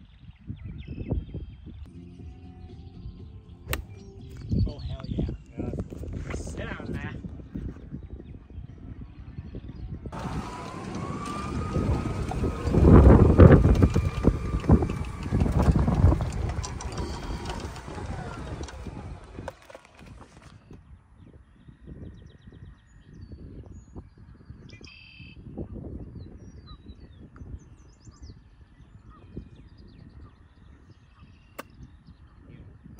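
Golf cart driving: a faint whine rises as it gets going about ten seconds in, holds, then falls away about twenty seconds in, over a rumbling noise that is loudest in the middle of the ride. Low rumbling before and after.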